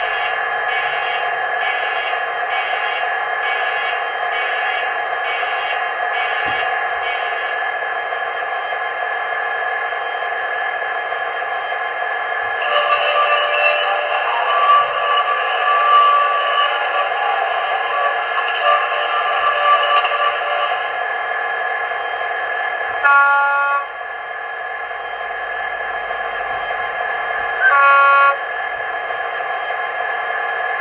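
Class 66 diesel sound effects from a TTS DCC sound decoder through a small bass-reflex speaker, over a steady hum. First the primer and alarm sequence beeps about twice a second for the first seven seconds. Then a flange squeal comes in with wavering high pitches for about eight seconds, and two short pitched toots follow near the end.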